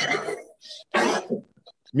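A person coughing twice, once right at the start and again about a second in.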